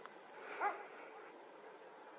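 Low background hiss, with one short, faint pitched call about half a second in that rises and falls in pitch.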